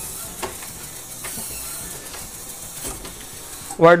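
Small hobby servo motor running steadily, its geared drive turning a door lock to open it.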